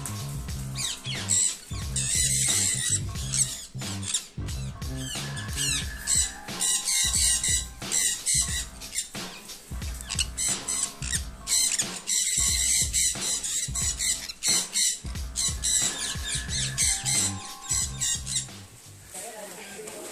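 Sun conures giving repeated high squawks over background music with a steady beat.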